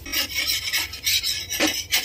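Flat metal spatula scraping across a hot dosa tawa in a series of quick rasping strokes, loosening the crisp dosa from the griddle before it is rolled.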